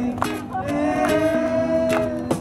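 Acoustic street band playing live: a voice holds one long note over strummed guitars, and a cajon is struck by hand in a steady beat.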